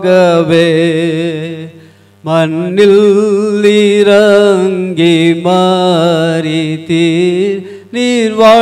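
A man singing a Tamil praise song solo into a microphone, in long held phrases with a wide, wavering vibrato. He breaks for a breath about two seconds in, then sings on until a short pause near the end.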